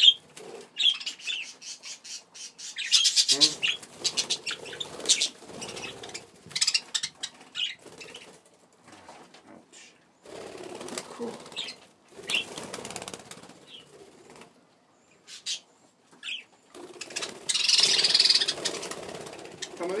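Budgerigars fluttering their wings in irregular bursts, with short high chirps in between.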